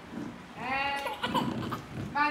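A short, quavering bleat lasting about half a second, followed by a few light knocks.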